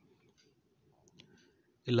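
Near silence with a few faint clicks, the clearest about a second in.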